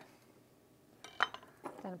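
A few sharp clinks and clacks about a second in, from a kitchen knife being put down on a wooden chopping board and a small glass jar being handled on the worktop.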